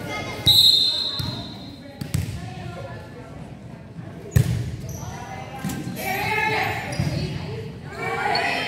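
A referee's whistle blows once for about a second and a half, and a volleyball thuds a few times on the gym's wooden floor. About four seconds in, the serve is struck with a single sharp smack, the loudest sound here, echoing in the large gym.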